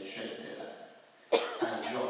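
A loud cough about a second and a half in, after a short pause in a man's speech.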